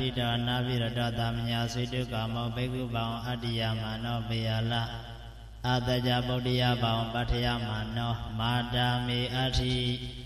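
A Buddhist monk's voice chanting Pali scripture on a steady low pitch, in two long phrases with a short break a little past halfway.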